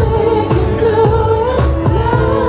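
A singer's voice singing live into a handheld microphone over pop accompaniment, with long, wavering held notes above a steady beat.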